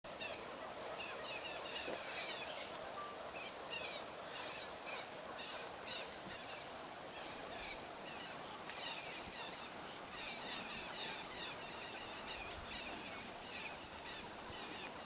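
A chorus of many birds calling at once: short, high chirping notes in quick clusters, overlapping with one another, over a steady low background hum.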